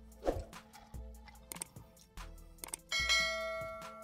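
Quiet background music with a bright bell-like chime about three seconds in that rings and slowly fades, a notification-style sound effect like those that go with a subscribe-button animation. A short low sound comes near the start.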